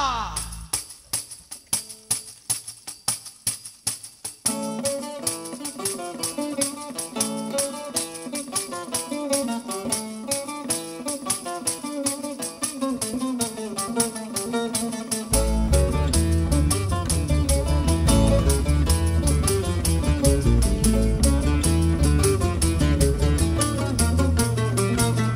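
Instrumental break of a Valencian cant de batre (threshing song), just after the singer's last long note ends. A tambourine keeps a steady beat alone for about four seconds. Plucked lutes and guitars then come in with the tune, and a double bass joins about fifteen seconds in, filling out the sound.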